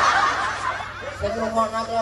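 Audience laughter at a comic stage show, fading away over the first half second or so, then a man's voice through the PA drawing out one long held note.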